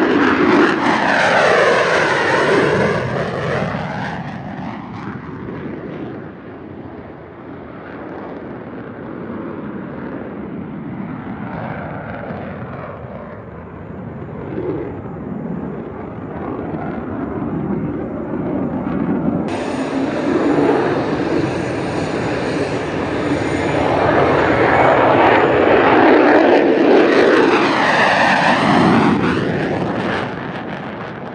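F-35A Lightning II fighter jets' single turbofan engines as the jets fly past, with a sweeping, phasing whoosh. One pass is loud at the start and fades away; a second builds to a loud peak near the end and then drops off.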